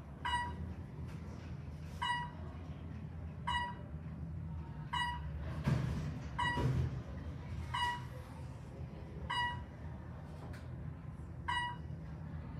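Traction elevator car travelling down, a low steady drone of the ride, with a short electronic beep repeating about every one and a half seconds. A brief rushing noise comes near the middle.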